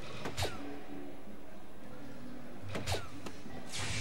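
Two soft-tip darts hitting an electronic dartboard, about two and a half seconds apart, each hit with a sharp knock and a short falling electronic tone from the board, over background music. A brief rushing noise comes near the end.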